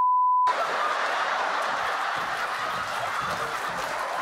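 A short, steady, high-pitched censor bleep at the very start, covering a word, followed by a sustained wash of audience laughter.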